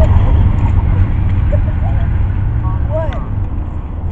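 Low rumble of a passed Amtrak passenger train, fading steadily as it draws away.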